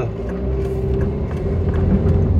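Car interior noise: a low engine and road rumble with a steady hum, growing a little louder as the car pulls out onto the road.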